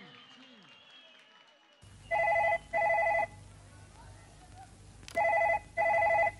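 Telephone ringing in a double-ring pattern: two short rings about two seconds in, then another pair about three seconds later, over a steady low hum.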